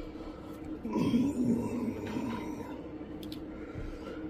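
A man clearing his throat once, about a second in, over a faint steady hum.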